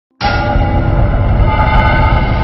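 Logo intro sting: a loud, sustained chord of several held tones over a low rumble, cutting in suddenly just after the start.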